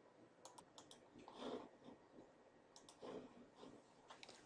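Near silence with a few faint clicks, in small clusters about half a second and just under three seconds in, and two soft brief sounds between them.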